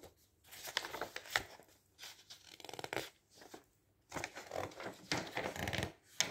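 Pages of a Daphne's Diary magazine being turned by hand: paper rustling and flapping in several short bursts with brief silent pauses between them.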